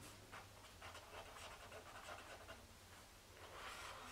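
Near silence with faint, irregular scratching of a felt-tip marker writing on paper.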